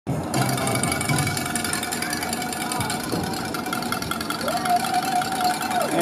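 A rapid, steady mechanical rattle like a jackhammer, with voices faintly under it.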